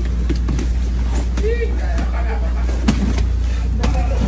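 A steady low rumble with faint voices underneath, broken by a couple of sharp knocks late on, the first the loudest moment.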